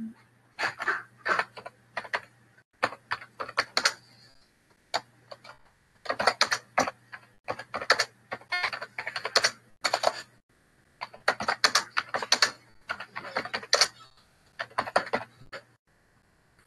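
Typing on a computer keyboard, heard over a video-call microphone: bursts of rapid keystrokes separated by short pauses, over a faint steady low hum.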